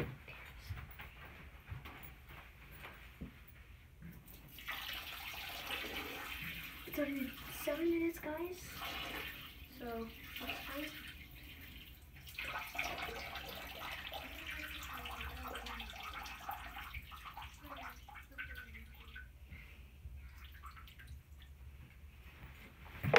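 Water running from an indoor tap, turned on about five seconds in, with a short break near the middle, and faint muffled voices over it.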